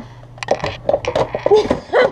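Plastic food-storage containers clattering against each other and the cabinet as they are pulled out of a low kitchen cabinet, a quick series of hollow knocks starting about half a second in.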